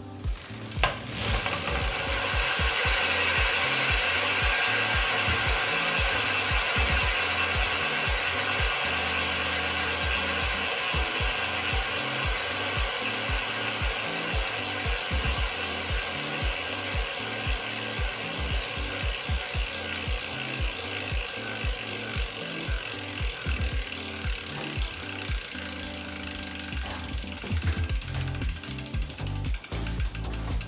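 Rear wheel of a Renault Platinum Light 8 folding minivelo spun by hand on a repair stand: the freewheel pawls ratchet in a fast continuous buzz as the wheel coasts, slowly fading as it loses speed. It is a test of how freely the wheel turns.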